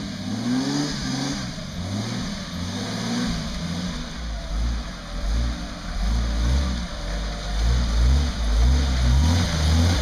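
Jeep CJ's engine revving up and down under load as it climbs through a deep mud rut, getting louder and heavier over the second half.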